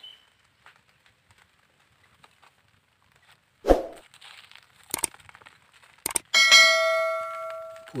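Subscribe-reminder sound effects: after about three and a half seconds of near silence, a sudden thump, then two sharp clicks, then a bell chime that rings out and fades over about a second and a half.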